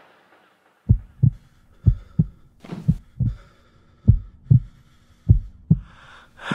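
Heartbeat sound effect: five beats of paired low thumps, lub-dub, about one a second, starting about a second in.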